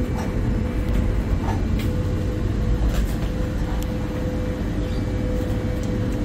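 Steady low rumble of a motor yacht's diesel engines under way, heard from inside the wheelhouse, with a faint steady whine running through it and a few light clicks.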